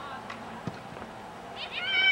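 A soccer ball kicked with a short dull thud about two-thirds of a second in, followed near the end by a loud high-pitched shout that rises and falls.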